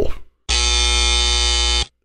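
Electronic buzzer sound effect, a flat, buzzy tone held for about a second and a half before cutting off abruptly. It comes right after a flubbed line.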